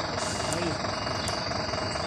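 Steady drone of an idling diesel truck engine under outdoor noise, with a short voice sound about half a second in.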